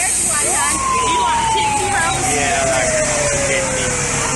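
Fire truck siren giving one quick rise, then a long, slow falling wail of about three seconds, over crowd voices.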